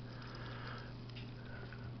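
Faint, soft hiss of dry breadcrumbs pouring from a canister into a steel mixing bowl of ground meat, over a steady low hum.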